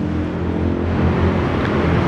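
Steady background vehicle noise: an even, low engine hum under a broad hiss, with no sudden events.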